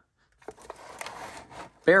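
A large climbing cam being pushed into a cardboard-and-duct-tape box: its aluminium lobes scrape and click against the cardboard for about a second and a half. It only barely fits.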